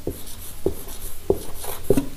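Marker pen writing on a whiteboard: four short strokes about two-thirds of a second apart, each a brief squeak that drops in pitch.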